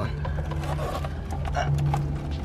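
Plastic centre dash bezel of a Lexus IS300 being pulled and worked loose by hand, with faint plastic creaks and knocks over a steady low hum.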